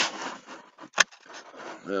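Handling noise: the microphone rubs and scrapes against clothing as the camera is moved, with one sharp knock about halfway through. A man says "well" near the end.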